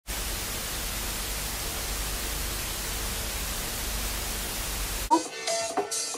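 Television static hiss: a steady, even rush of noise that cuts off abruptly about five seconds in, giving way to music.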